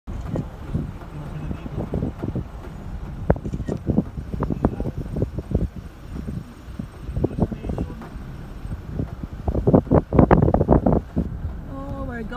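Wind buffeting the microphone of a camera carried on a moving vehicle, in irregular low gusts over road rumble, strongest about ten seconds in.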